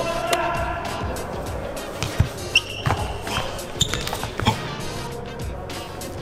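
A football juggled during a freestyle shoulder trick: several irregular thumps of the ball against foot, body and shoulder between about two and five seconds in, over background music.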